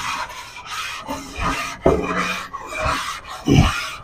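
A brick scrubbed back and forth over coarse salt on a hot new iron dosa tawa: a gritty rasping scrape that swells with each stroke, with a few heavier low thuds among the strokes. The salt is burned on with the gas left on, to scour and season the new griddle.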